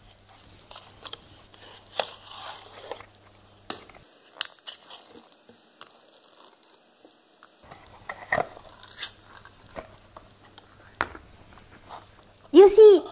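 Cardboard carton being opened and the ring-pull lid of a small metal tin of salmon being peeled back: a series of sharp metallic clicks and crackling scrapes, the loudest about eight seconds in.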